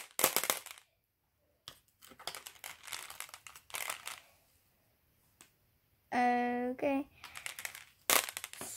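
Glass marbles dropping a few at a time from a mesh bag onto a tub of marbles, clicking and clattering in scattered bursts with short pauses between. Near the end a voice holds a brief steady hum.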